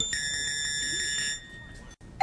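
Game-show electronic buzzer: one steady high tone that starts sharply, holds for about a second and a half, then drops away and fades.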